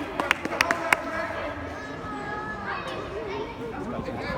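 A quick run of about six sharp cracks within the first second, then children's shouts and chatter in a large indoor sports hall.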